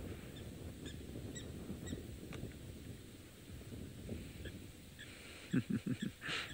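Faint outdoor ambience: a steady low rumble with scattered short, high bird chirps. A few short, low honk-like calls come near the end.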